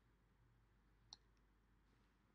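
Near silence: faint room tone, with a single faint click about a second in.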